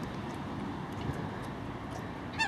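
Steady outdoor background noise: an even low rumble with no distinct events.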